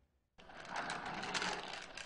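A moment of silence, then a rapid, steady rattling noise fades in about half a second in.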